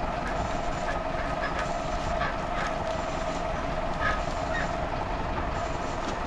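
Tractor-mounted hydraulic winch reeling in its wire rope with the tractor's engine running: a steady mechanical hum with one held tone, and a few faint ticks and scrapes as the dragged tree comes through the snow and brush.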